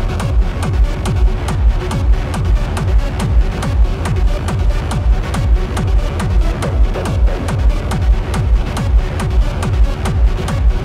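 Techno played by a DJ through a big sound system: the kick drum comes back in right at the start after a stretch without bass, then keeps a steady four-on-the-floor beat of about two kicks a second with hi-hats over it.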